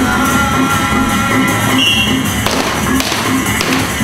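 Live Sasak gamelan music with kendang drum and gongs, keeping a steady pulse of about three beats a second. Several sharp knocks come in the second half.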